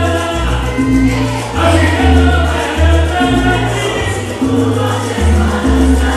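Salsa song with sung vocals and chorus voices over a steady bass line.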